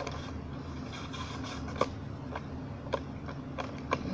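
Handling noise of a phone camera being adjusted: a few light clicks and rubbing, over a steady low hum.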